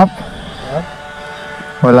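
A man's voice, ending a word at the start and exclaiming "good!" near the end, over faint steady background music.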